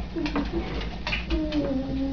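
Several low, drawn-out vocal notes, some of them overlapping, with a few short clicks between them.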